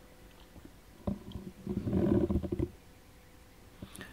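Brief burst of garbled, muffled digital-radio audio about a second in, lasting a second and a half: broken-up voice over the DV Switch Fusion link, mangled by packet loss.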